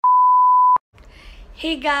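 Colour-bars test tone used as an edit transition: one steady, loud, high-pitched beep lasting just under a second that cuts off suddenly.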